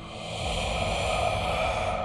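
A soft, airy rushing noise that swells up about half a second in and then holds steady, over faint sustained music tones.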